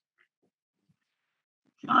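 Near silence, then a man's voice begins speaking just before the end.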